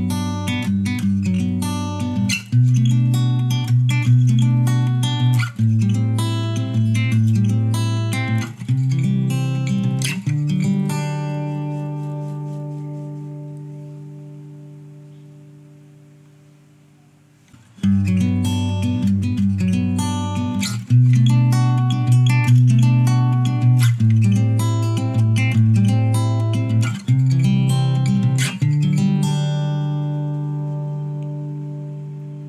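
Acoustic guitar strumming a short chord progression, picked up by an Audio-Technica AT2035 condenser microphone, with compression and reverb added. The progression ends on a chord left ringing for about seven seconds as it fades, then starts again a little past halfway.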